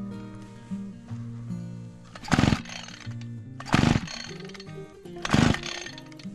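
A brush cutter's small engine being pull-started three times, about a second and a half apart; each pull gives a short, loud burst and the engine does not catch. Background music plays throughout.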